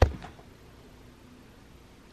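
A single sharp knock right at the start, then a faint steady hiss of room noise.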